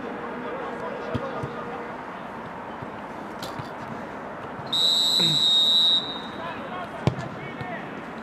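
Referee's whistle blown once, a steady shrill tone lasting just over a second, signalling the free kick; about a second later a sharp thud as the ball is struck.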